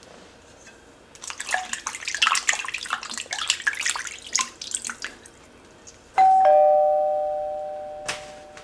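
Hand splashing and rubbing in water in a stainless steel bowl for about four seconds: hand-washing before eating with the fingers. About six seconds in, a doorbell-style two-note ding-dong chime sound effect, the second note lower, rings out slowly and is the loudest sound.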